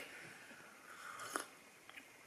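Faint mouth sounds of a woman sipping from a mug and swallowing, with one short click about one and a half seconds in.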